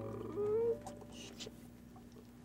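A short whimper rising in pitch, about half a second long, followed by a brief soft hiss, over faint steady background tones.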